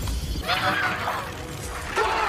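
Film sound effect of something shattering, a spray of fragments breaking and scattering that starts about half a second in, over the underlying score.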